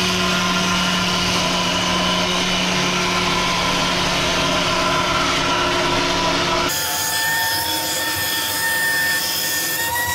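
CNC router spindle (a handheld router fitted with a long half-inch cutter) running at speed and milling through white polystyrene foam blocks, a steady whine over the hiss of the bit chewing the foam. About two-thirds of the way through the sound changes abruptly: the low hum drops out and a higher whine takes over.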